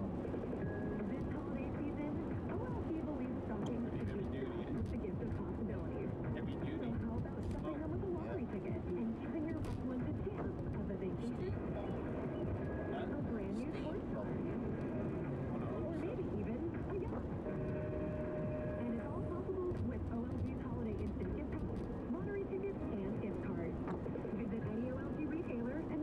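Steady road and tyre noise inside a car on a wet highway, with a car radio playing low underneath: muffled talk and some music.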